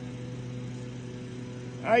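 A steady low mechanical hum with a few fixed tones, like an engine idling, unchanging throughout.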